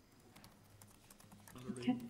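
Faint, scattered clicks of typing on a laptop keyboard.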